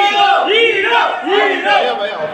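A crowd of men shouting together in a loud rhythmic chant, about two shouts a second.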